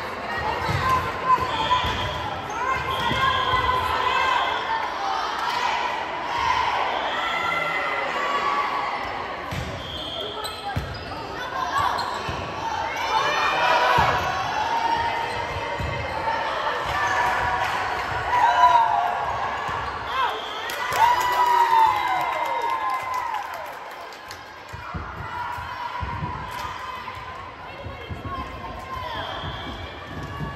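Volleyball rally in a large gym: short sneaker squeaks on the court floor and sharp ball hits, with players' and spectators' voices echoing through the hall.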